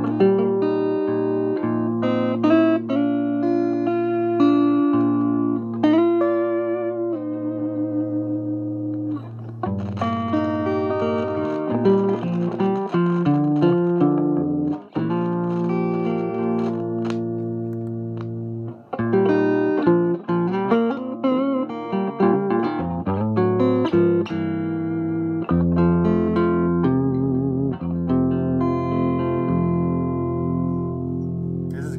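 Electric guitar played through a 1963 Egmond V1020 5-watt single-ended EL84 tube amp: a continuous run of picked notes and chords. The amp's preamp plate voltage has been raised to about 140 volts by a resistor added in parallel with the plate resistor.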